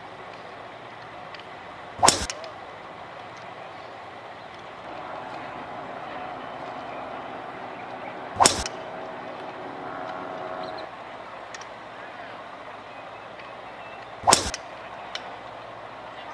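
Three sharp cracks of a golf driver striking the ball off the tee, about six seconds apart, over a steady background hum, with a fainter click shortly after the last.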